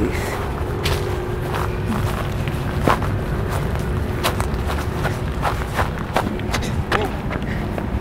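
Footsteps and scattered knocks of a handheld camera while walking, irregularly spaced, over a steady low wind rumble on the microphone.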